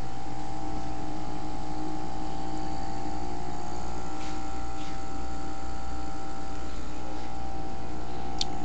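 Steady electric hum of aquarium air pumps running continuously, holding several even tones without change.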